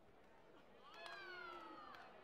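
A high-pitched vocal cry, most likely a taekwondo fighter's kihap shout. It starts about halfway through and falls slowly in pitch over about a second, faint against the hall's quiet.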